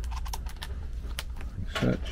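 A quick run of light clicks and taps as screws and a cordless driver are handled against the sheet-metal panel of an air handler.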